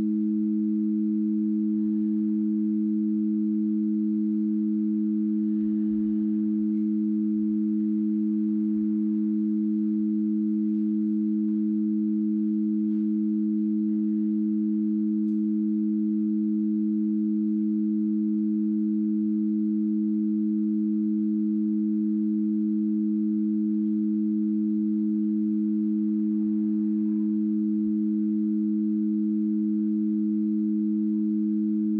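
Two low, steady electronic sine tones sound together as a pure-tone drone. They hold unchanged in pitch and level throughout.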